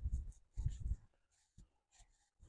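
Short bursts of breath and rubbing noise close on the microphone of a man out of breath from climbing a steep hill: two in the first second and a faint one near the end.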